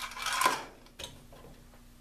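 Small metal screws rattling and clinking in a parts container as they are rummaged through, then a single click about a second in.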